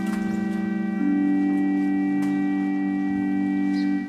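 Church organ holding long sustained chords, changing chord about a second in.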